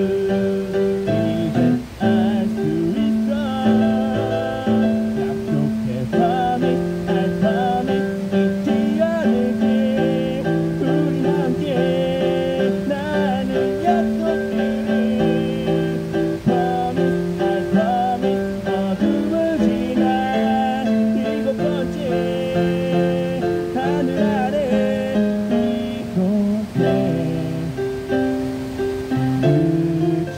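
A song played on an electronic keyboard, with a steady accompaniment under a moving melody.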